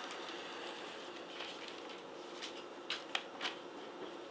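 Pages of a Bible being leafed through, with a few soft, crisp rustles of paper, most of them about three seconds in.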